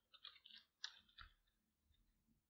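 Faint computer-keyboard keystrokes, a few soft clicks in the first second or so, over near silence.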